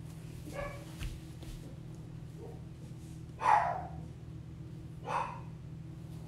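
A dog barking twice, about three and a half and five seconds in, over a steady low hum.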